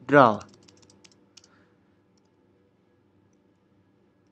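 A quick run of light computer keyboard keystrokes, about a dozen clicks in the first second and a half, then near silence.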